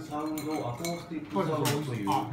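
Tableware clinking on a restaurant table, with two sharp clinks about a second and a second and a half in, over people talking.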